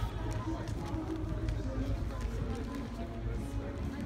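Busy street ambience: voices of people chatting nearby in a crowd, footsteps, and a steady low city rumble.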